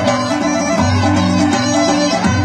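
Live Greek folk band playing a traditional dance tune, with a steady pulsing bass line under the melody.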